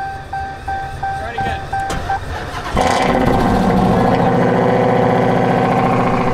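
A Dodge Charger Hellcat's dashboard warning chime repeats about three times a second. Close to three seconds in, its supercharged 6.2-litre Hemi V8 fires up on a jump start and runs loudly and steadily.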